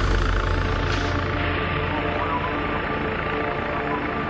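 A low, steady rumble that fades away about a second and a half in, leaving a hiss and faint sustained tones as music comes in.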